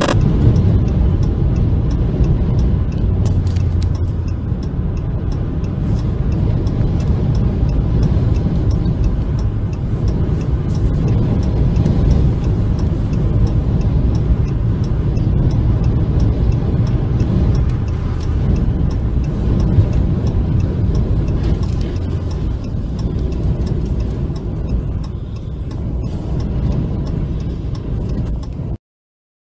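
Strong wind buffeting and road noise from a moving vehicle on the highway, a steady low rumble with a faint regular ticking.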